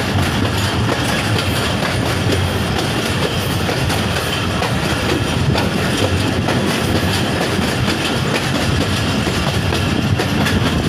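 A Pakistan Railways passenger train running, heard from on board: a steady, loud rumble of the moving coaches with irregular clicks of the wheels over the rail joints.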